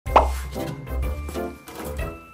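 A short cartoon plop sound effect, quick and rising in pitch, right at the start, then bouncy children's background music.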